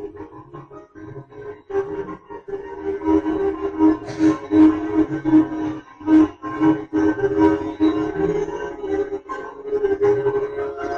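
Hindustani classical music on a plucked string instrument: a slow melodic phrase of held notes, each freshly plucked every fraction of a second to a second.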